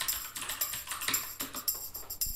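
Quick typing on a computer keyboard, a run of irregular key clicks, over background music.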